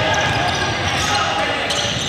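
Basketball game in a gymnasium: players' voices calling out, with the ball bouncing and shoes on the hardwood court, all echoing in the large hall.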